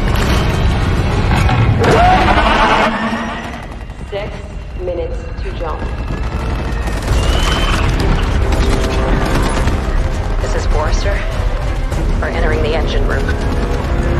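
Action film soundtrack: a music score mixed with booms and bursts of gunfire. The loudest and densest part comes in the first three seconds, with a short lull about four seconds in before it builds again.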